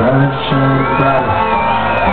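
Live band music from an acoustic guitar, an electric guitar and percussion playing between sung lines. A high drawn-out shout rises over the music in the second half.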